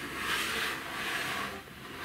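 A whoosh sound effect: a soft rushing hiss that swells up and fades away near the end.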